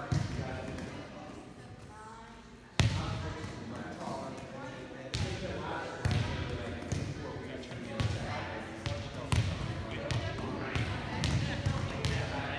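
Volleyballs being set and landing on a hardwood gym floor: sharp smacks every second or so, echoing in the hall, over the chatter of several players.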